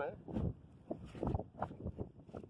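Wind buffeting the microphone, with short irregular rustles and knocks and the tail of a voice at the very start.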